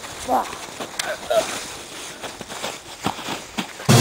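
Footsteps of people running through snow, with a few short shouts. Loud music starts right at the end.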